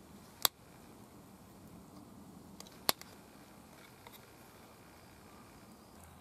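Two sharp clicks about two and a half seconds apart, with a couple of faint ticks later, as flakes pop off the edge of a flint drill bit under a hand-held pressure flaker.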